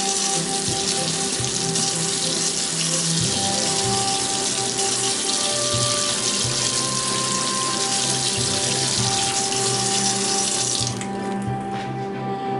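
Kitchen faucet running steadily into a stainless steel sink while a plastic spoon is rinsed under the stream; the water shuts off about a second before the end. Soft background music plays underneath.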